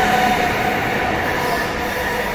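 TCDD high-speed train passing close alongside the platform at speed: a steady rush of noise with a few held tones underneath, easing slightly near the end.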